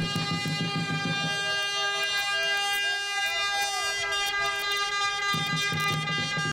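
One long, steady, horn-like tone with many overtones, held unbroken at an even level, with faint voices beneath near the start and the end.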